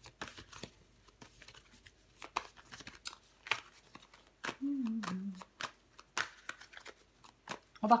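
A deck of tarot cards being shuffled and handled by hand: irregular crisp snaps and rustles. A short hummed 'mmh' about halfway through.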